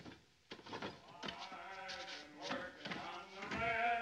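Male voices singing, ending in long, wavering held notes.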